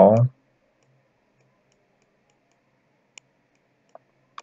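Two faint sharp clicks of a computer mouse, about three seconds in and again near the end, used to handwrite characters on screen. Between them it is near silence.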